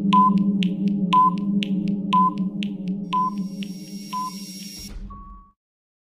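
Countdown timer sound effect: a steady low drone under ticks about twice a second, with a higher beep on each second. It fades over about five seconds and ends with a short hiss and a brief tone.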